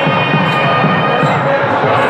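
Devotional chanting to music: sustained held tones with a regular percussion beat about twice a second.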